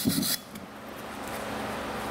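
Hand wire brush scrubbing the freshly brazed bead on a cast-iron vise casting, a few scratchy strokes that stop about a third of a second in. After that, only a steady low background hum.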